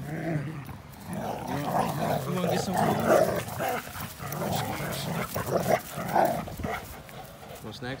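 Two dogs, an American pit bull terrier and a Belgian Malinois mix, growling at each other as they wrestle and tug over a rope toy: rough play-fighting. The growling comes on about a second in and dies down near the end.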